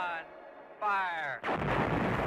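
Sound effects for a logo sting: two short falling pitched glides, then, about one and a half seconds in, a loud rumbling blast.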